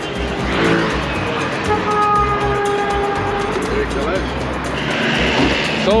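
Road traffic on a busy city boulevard: cars driving past with a steady low rumble. A held pitched tone lasts about two seconds, starting a little under two seconds in, and background music plays underneath.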